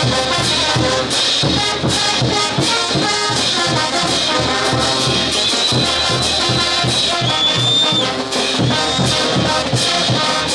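Street brass band playing a festival dance tune: trumpets, trombones and sousaphones over crash cymbals and bass drum keeping a steady beat.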